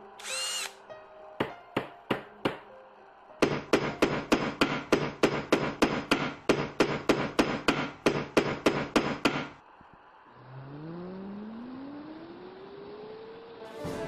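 Cartoon sound effects of hammering: a short high whistle-like tone, then four separate hammer blows and a fast, even run of hammering at about three to four strikes a second that stops suddenly. After it, a tone slides slowly upward over a hiss.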